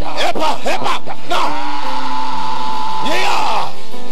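A voice crying out in short rising-and-falling calls, then holding one long high cry for about two seconds, over sustained keyboard chords of church worship music.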